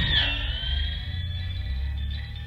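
Music: a held high tone that dips slightly in pitch just after the start and then holds, over a steady low drone, slowly getting quieter.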